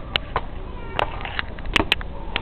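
Footsteps on stone stairs: irregular sharp taps and scuffs, the two loudest close together near the end, over faint short high calls.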